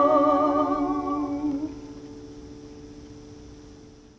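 Voices holding the final note of a folk song in harmony over a strummed acoustic guitar chord. The voices stop about a second and a half in, and the guitar chord rings on alone, fading away.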